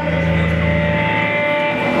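Sustained notes from a rock band's amplified instruments: a low drone with several steady higher tones held above it, fading out near the end.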